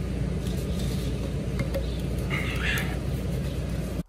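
Steady low mechanical drone of running floor-prep equipment: a motor humming evenly with a noisy hiss over it.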